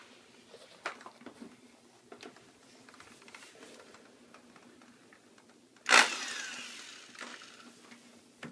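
Hand handling on a sump basin lid: light taps and faint scraping as debris is brushed off, with a sharp knock about six seconds in that rings and fades over a second or so.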